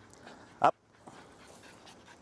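A man's single short spoken command, "Up," about half a second in. Around it are faint sounds from a small puppy on a leash.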